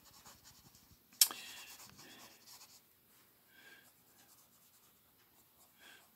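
Faint strokes of a watercolor brush pen rubbing across sketchbook paper as colour is laid in, with one sharp tap a little over a second in.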